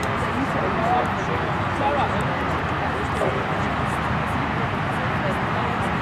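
Indistinct, distant voices of ultimate frisbee players calling out on the field, over a steady rushing background noise.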